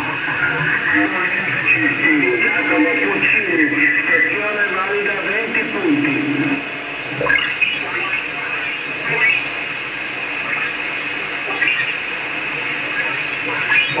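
Receiver audio from a homebuilt QRP transceiver being tuned across the 80 m amateur band in LSB. Band noise carries snatches of single-sideband voices in the first half, then whistling tones sweep up and down as the dial passes through signals.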